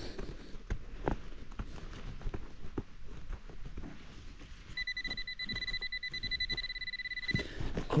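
Gloved hand scraping and raking through loose forest soil and pine needles, small scratches and rustles. About five seconds in, a steady high electronic tone sounds for about two and a half seconds and then cuts off: a metal detector signalling more metal in the dig hole.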